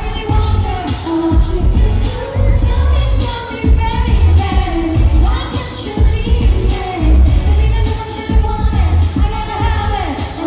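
A woman singing a pop song live into a microphone over recorded backing music with a heavy, pulsing bass beat, all played through loudspeakers.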